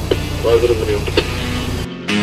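Fire engine's engine idling with a steady low rumble, and a brief voice over it about half a second in. The sound cuts off suddenly near the end.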